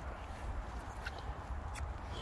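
Low steady rumble of wind on the microphone with a few faint ticks; the dog's toy ball gives no squeak.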